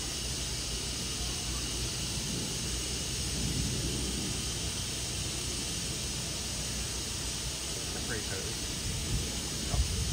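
Steady outdoor background hiss with a faint low murmur, at an even level and with no distinct animal call; a couple of faint high chirps come near the end.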